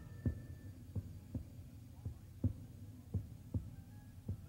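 Opening theme music reduced to soft low thumps that pulse in pairs, like a heartbeat, about once a second over a faint low drone, fading toward the end.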